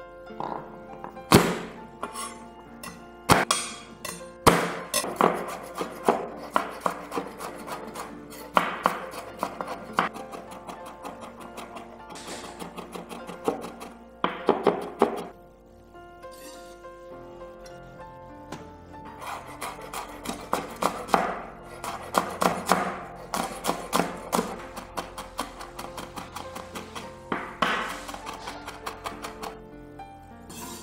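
Kitchen knife chopping on a bamboo cutting board: a few hard single knocks in the first few seconds, then quick runs of chopping strokes mincing garlic. After a short pause around the middle, a second run of fast chopping follows, cutting chilies.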